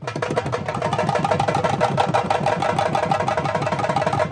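Drums beaten fast and steadily in a dense, even rhythm, with a faint steady higher tone running through it.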